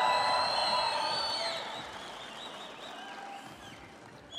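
Arena crowd noise of cheering and applause with several high whistles, fading away over a few seconds.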